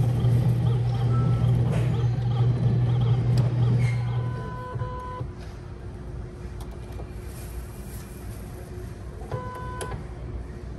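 A loud steady low hum that stops about four and a half seconds in, followed by a pet tag engraving kiosk's electronic beeps: one just after the hum ends and another near the end.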